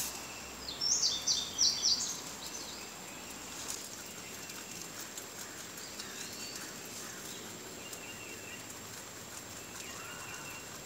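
White rabbits chewing fresh leafy greens, a steady run of small crisp crunching ticks. A bird sings a quick series of high chirps about a second in, the loudest sound, with softer bird chirps later.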